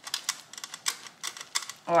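Cheese being grated on a stainless steel box grater: quick, uneven scraping strokes, several a second. A woman's voice says "Oh" at the very end.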